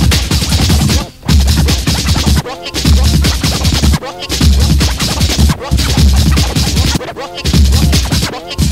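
Early-1990s hardcore rave music from a DJ mix: heavy bass and breakbeats cut up with record scratching. The music drops out briefly about every second and a half.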